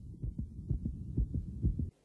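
Low, irregular thudding and rumbling, with nothing in the higher pitches, that cuts off suddenly just before the end.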